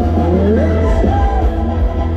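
Live band playing loud ramwong dance music through a PA, with heavy bass and a melody line that slides up in pitch in the first second.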